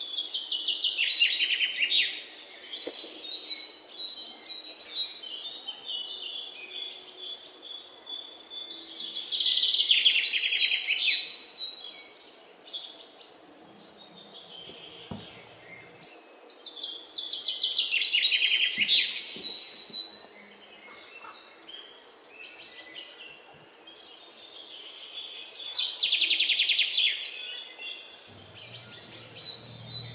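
Birds calling: a loud, rapid trilling call that falls in pitch, repeated four times about eight seconds apart, with softer chirping in between.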